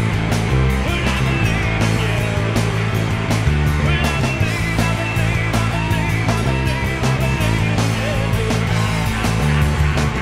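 Live rock band recording in an instrumental passage, with a four-string electric bass played fingerstyle on its neck pickup alone. The bass notes change every second or so under the guitars.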